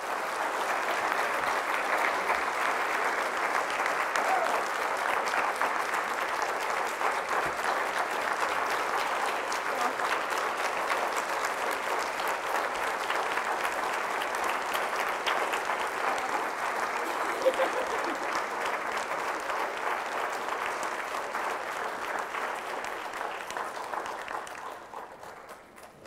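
Audience applauding steadily, a dense sustained clapping that dies away over the last couple of seconds.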